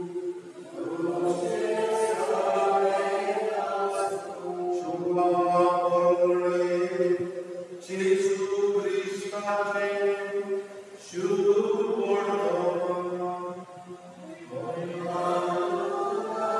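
Slow liturgical chant sung during Mass: a single voice holds long notes in phrases of about three seconds, with short breaks between them. A steady low note carries on underneath.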